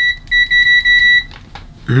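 KAIWEETS HT208D clamp meter's continuity beeper sounding a loud, high-pitched steady beep as the shorted test lead tips touch. It breaks off for a moment just after the start, then sounds again and stops about a second in as the tips part, followed by a couple of faint clicks.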